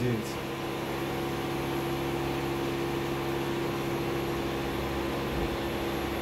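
Steady low machine hum with two constant tones over a faint hiss, unchanging throughout.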